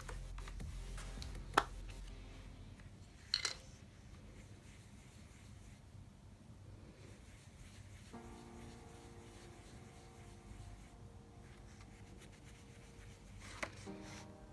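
Quiet background music under the soft rubbing of an ink blending brush on paper. Two sharp clicks from handling the plastic ink-pad cases come about one and a half and three and a half seconds in.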